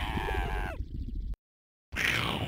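A shrill, wavering vocal cry that bends down in pitch and breaks off under a second in, over a low rumble. All sound then cuts out abruptly, leaving complete silence for about half a second.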